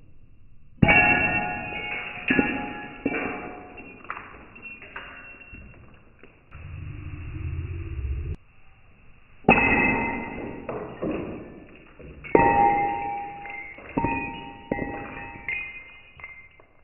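Thick chunk of fused glass striking a concrete floor and breaking, played back slowed down: a series of sharp impacts, each followed by deep ringing tones that fade, in two clusters with a low hum between them.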